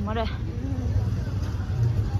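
Street ambience: a voice says a word at the start, and faint voices talk over a steady low rumble.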